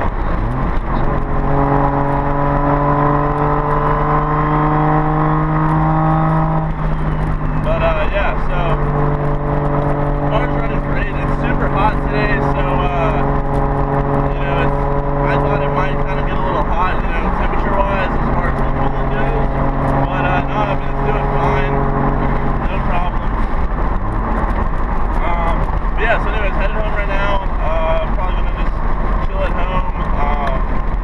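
Nissan 240SX's engine and road noise heard from inside the cabin while cruising, the engine note holding a steady pitch. The pitch breaks and shifts about seven seconds in, then settles steady again.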